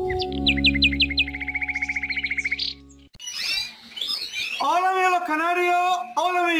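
Music with descending birdlike chirps and then a fast, even trill. It cuts off suddenly about three seconds in. After that, caged canaries chirp and call, with the calls growing louder and lower toward the end.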